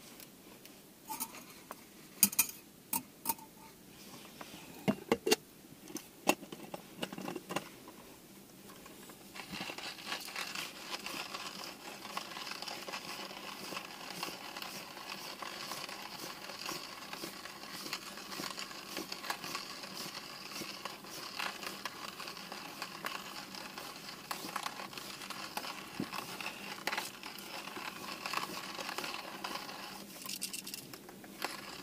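Hand coffee mill being cranked, grinding beans with a steady crunching from about nine seconds in; before that, a few sharp clicks and knocks as the mill is handled and set up.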